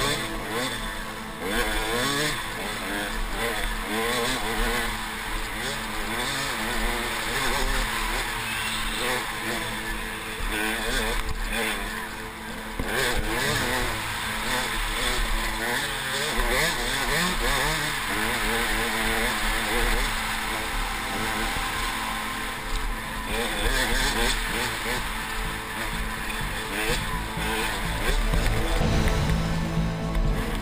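KTM 200 XC-W two-stroke dirt bike engine under race load, its pitch rising and falling over and over as the rider works the throttle and gears, with rushing wind noise on a helmet-mounted camera.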